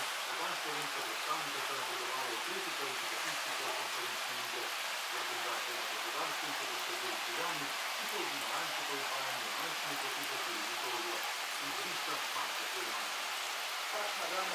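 A steady rain-like hiss with indistinct voices talking in the background throughout.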